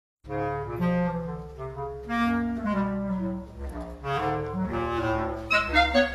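Clarinet duo playing: a bass clarinet holds low sustained notes under a moving line of higher notes. The music starts about a quarter second in.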